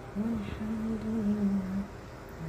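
A person humming a slow tune, holding long low notes that step between a few pitches.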